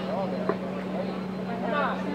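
Faint distant voices over a steady low hum, with a single sharp knock about half a second in.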